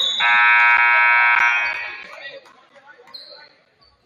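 Gymnasium scoreboard horn sounding one long, loud blast of about a second and a half, then dying away in the hall's echo.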